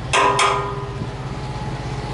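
Two sharp metallic knocks about a quarter second apart, each leaving a brief ringing, over a diesel semi-truck engine idling steadily.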